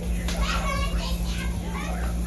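A child's high voice calling out and chattering in the background, over a steady low hum.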